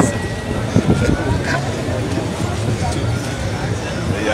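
A car engine running steadily with a low rumble, with brief voices nearby in the first second.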